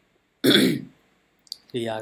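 A person clears their throat once, a short loud burst about half a second in.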